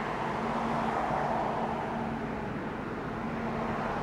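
Steady, even hum heard inside a parked car, with a faint low tone held under it.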